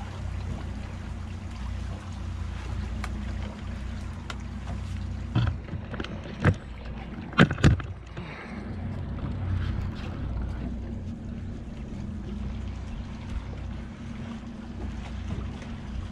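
Twin outboard motors idling steadily, with wind on the microphone. A few sharp knocks stand out about five to eight seconds in, two close together being the loudest.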